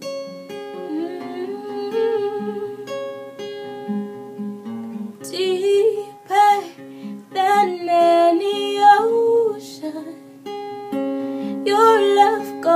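Acoustic guitar playing chords, with a woman's voice singing over it from about five seconds in.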